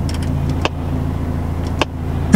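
Car engine idling, a steady low hum heard from inside the cabin, with a few short sharp clicks over it.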